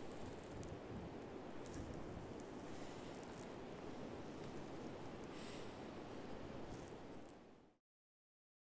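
Faint, steady outdoor rush with scattered short crackles of dry leaves being stepped on or brushed. It fades out shortly before the end.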